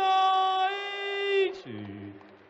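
A darts caller's long, drawn-out call of a maximum, "one hundred and eighty", over a PA. The last syllable is held on one pitch, then slides down and fades near the end.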